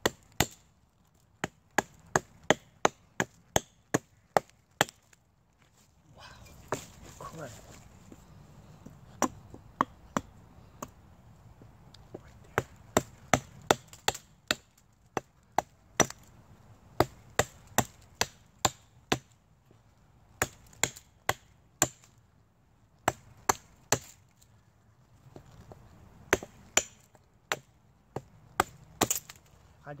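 A hatchet chopping into a resin-soaked fatwood knot in a rotted pine trunk: quick sharp strikes, about two to three a second, in runs broken by short pauses.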